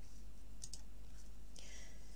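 Quiet pause with a steady low hum, two faint small clicks about two-thirds of a second in, and a soft hiss near the end.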